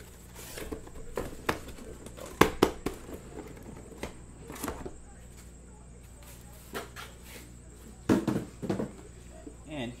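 Cardboard shipping case being opened and sealed boxes of trading cards lifted out and set down on a table: irregular knocks, scrapes and cardboard rustling, loudest about two and a half seconds in and again in a cluster near the end.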